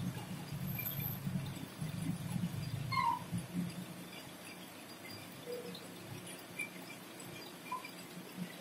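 Low hum of distant construction machinery that fades about three and a half seconds in, with three faint short calls over it, the clearest about three seconds in.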